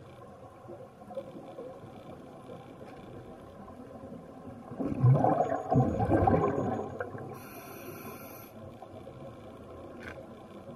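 A scuba diver exhaling through the regulator, heard underwater through the camera housing: a loud burst of bubbling about five seconds in that lasts around two seconds, over a steady low underwater hiss.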